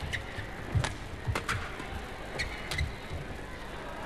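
Badminton rally: several sharp cracks of rackets striking the shuttlecock, with dull thuds of the players' footwork on the court, over the steady murmur of an arena crowd.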